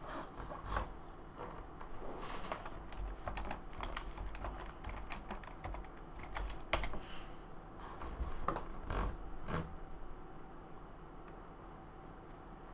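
Typing on a computer keyboard: a run of irregular key clicks that thins out and stops about ten seconds in.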